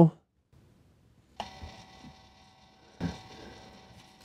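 Phomemo D30 thermal label printer printing a label: its feed motor whirs in two spells, starting suddenly about a second and a half in and again about three seconds in, a steady whine made of several fixed pitches.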